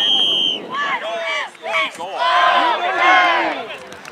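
A referee's whistle blown in one short, steady blast at the very start, followed by players shouting and calling out across the field.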